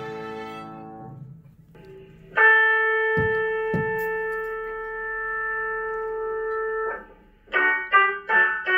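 Student string orchestra: a bowed chord fades out. Then a single steady note is held for about four and a half seconds, with two soft thumps partway through. Near the end, violins start playing short, detached notes.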